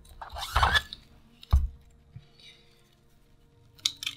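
Plastic bayonet scabbard handled on a counter: a brief rustling scrape, then one sharp click about a second and a half in, as of its locking clip being worked.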